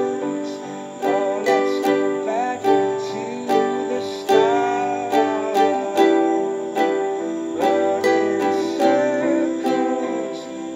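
Ukulele strummed in a slow, steady rhythm, about one stroke a second, playing along with a recorded ballad of sustained chords and a gliding singing voice.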